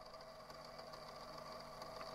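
Faint steady outdoor background noise with a thin high whine and a few faint ticks, slowly growing a little louder.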